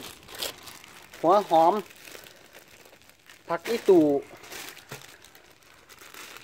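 Hands rustling and crinkling wet leafy greens and spring onions in a plastic basin of water, in short irregular bursts.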